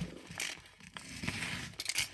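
Snap-off utility knife slitting open a paper padded mailer: a scratchy scraping of the blade through the paper, with a few light clicks and crackles and a longer scrape in the second half.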